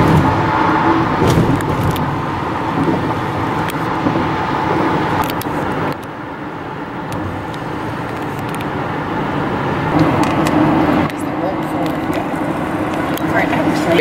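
Car driving on the road, heard from inside the cabin: steady tyre and engine noise, a little quieter after a cut about six seconds in.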